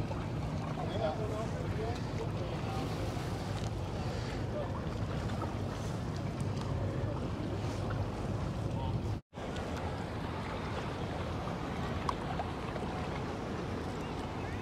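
Steady low drone of powerboat engines on the water: a Sea-Doo sport boat running past, then, after a brief dropout about nine seconds in, a motor yacht cruising by. Wind and water noise run under the engines.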